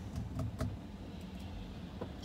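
Quiet cabin noise of a Tesla coasting to a stop: a low steady hum, with a few faint, irregular ticks in the first second.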